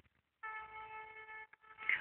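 A steady pitched tone with several overtones, held level for about a second, starting about half a second in.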